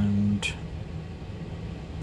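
A man's drawn-out "and" trailing off, a short click, then a pause filled only by a faint steady low hum of room noise.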